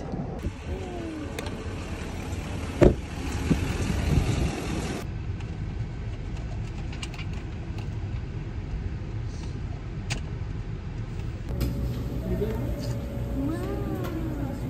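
Steady low rumble of a car heard from inside the cabin, with one sharp click about three seconds in. Faint voices come through near the end.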